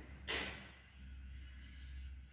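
Quiet room tone with a steady low hum, and one brief soft rustle about a third of a second in.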